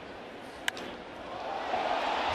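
Sharp crack of a wooden bat hitting a pitched baseball, about two-thirds of a second in, over steady stadium crowd noise that swells in the second after the hit.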